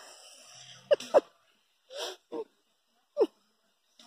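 A handful of short, breathy vocal sounds, brief and separate, a couple of them falling in pitch, scattered over a few seconds.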